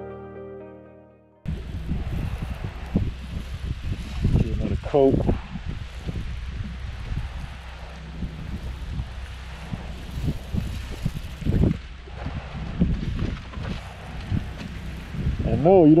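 Background music fading out, then a sudden cut about a second and a half in to live outdoor sound: wind buffeting the microphone over the steady hiss of a soft-wash wand spraying cleaning solution onto clay barrel roof tiles.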